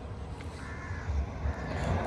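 Outdoor background noise with a low rumble and a brief, faint distant bird call about half a second in.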